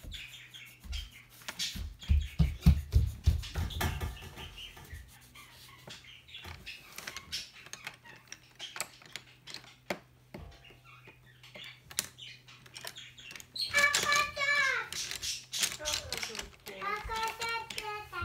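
Felt-tip marker scribbling fast over a paper workbook page for the first few seconds, with rapid rubbing strokes and taps on the table, then a lull. Later a child's high voice slides down in pitch, twice.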